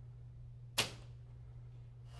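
A chalk line snapped once against a drywall wall, a single sharp snap a little under a second in, over a faint steady low hum.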